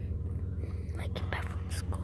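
Steady low rumble of a car heard from inside the cabin, with a few short breathy, whispered sounds in the second half.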